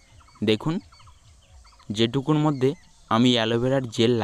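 Domestic fowl calling: a short call about half a second in, then longer, wavering calls from about two seconds in.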